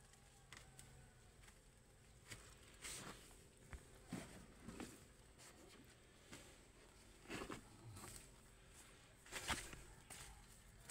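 Faint, scattered footsteps and rustling of someone moving about on soil, the loudest cluster near the end.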